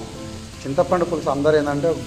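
Chicken and masala sizzling in a frying pan as it is stirred, heard under a man's speech and steady background music.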